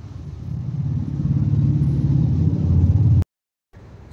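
Low engine rumble of a passing motor vehicle, growing louder over about three seconds, then cut off abruptly.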